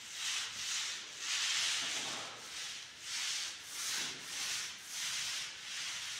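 A paint roller on an extension pole rolled up and down a wall, a rasping rub with each stroke, swelling and fading about once a second.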